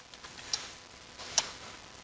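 A few short, sharp clicks from computer input in a quiet room, the two loudest about half a second and a second and a half in.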